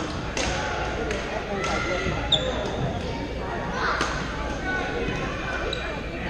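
Badminton rackets hitting a shuttlecock, sharp smacks every half second to a second from this and neighbouring courts, echoing in a large gym hall over a steady murmur of players' voices. A short high squeak about two seconds in is the loudest moment.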